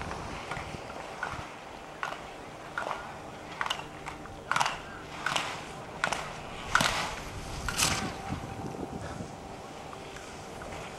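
Slalom skis carving on hard-packed snow, a short edge scrape with each turn about once a second, growing louder as the skier nears and stopping near the end.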